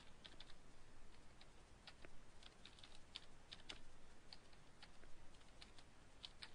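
Faint typing on a computer keyboard: quick, irregular keystroke clicks in short runs with brief pauses between.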